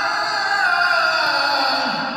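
A man's voice chanting a prayer recitation in one long melodic phrase: a sustained held note that slides slowly down in pitch through the second half.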